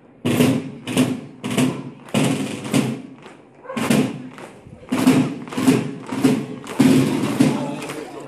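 Parade marching drums playing a steady cadence of loud strokes, a little under two a second, with a short lull about three seconds in.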